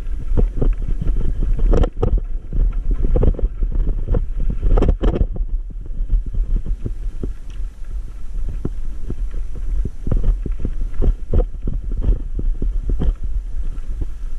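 Steady low rumble with frequent knocks and rattles as an e-bike rolls over a rough dirt and rock track, the bumps jolting through the bike and camera.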